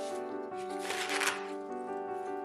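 Background music with steady notes, over the rustle and tearing of green corn husks being stripped from an ear of sweet corn by hand, loudest about a second in.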